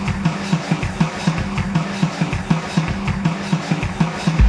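Instrumental metalcore: heavy band sound driven by regular drum hits about three times a second, with no vocals.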